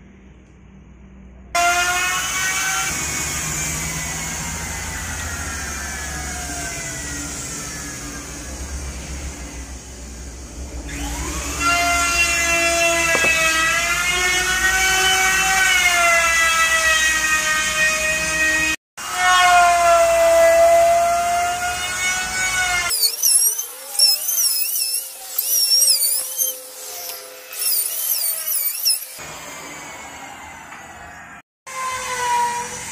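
Handheld electric power tool running, its high motor whine sagging and rising in pitch as the load changes, in several segments broken by abrupt cuts. In the last few seconds, high warbling whistle-like chirps take over.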